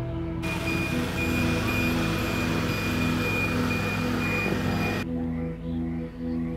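Background music, with the steady rushing noise and high whine of a running aircraft engine laid over it. The engine noise cuts in abruptly about half a second in and cuts off just as abruptly about five seconds in.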